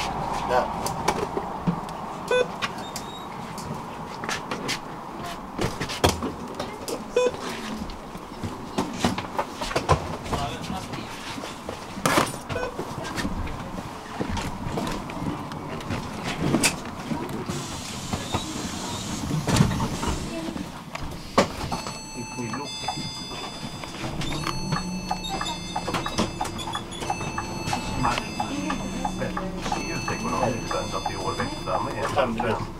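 Inside a city bus while passengers board: background voices with scattered knocks and rattles of luggage and fittings. About two thirds of the way in, several steady tones set in and hold.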